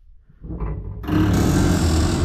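Corrugated metal hut door being pushed open, a scraping noise that starts faint and turns loud about a second in.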